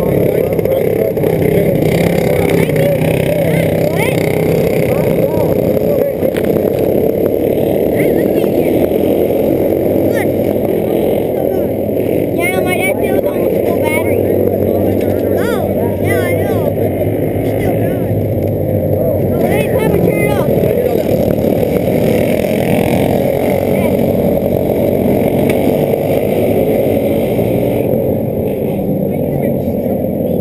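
Racing kart engines running in a steady, loud drone, with people's voices over it.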